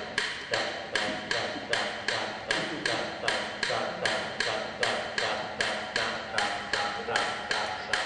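Steady rhythmic tapping, about two and a half sharp strokes a second, each with a short ringing decay.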